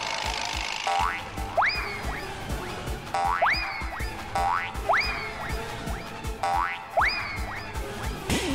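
Comedy sound effects over background music: a quick upward whistling swoop that sags off again, repeated several times every second or two, each led in by a short stepped run of notes.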